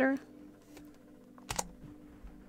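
Tarot cards being handled on a table: one sharp click about one and a half seconds in and a few fainter taps, over a faint steady hum.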